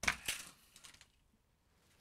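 Hot Wheels Split Speeders Ninja Chop launcher firing a plastic toy car down the orange track: a sharp plastic clack at the launch, a lighter click about a third of a second later, and a few faint ticks near one second as the car, split in half by the chopper, rolls out.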